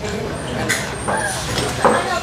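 Indistinct talking over a steady low background rumble.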